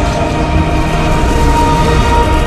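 Loud, steady low rumble of a movie explosion and debris sound effect, with sustained droning tones held above it.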